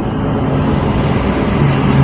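Steady car-interior noise while driving slowly: a low engine hum under road and tyre noise, heard from inside the cabin.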